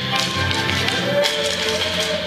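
Dancers' hand-held wooden sticks clacking together in a rhythmic pattern during a stick dance, over music.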